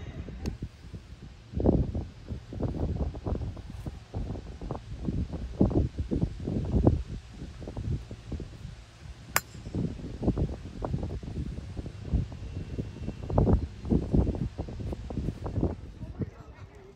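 Outdoor wind buffeting the phone microphone in irregular low gusts, with one sharp click about nine seconds in: a golf club striking the ball.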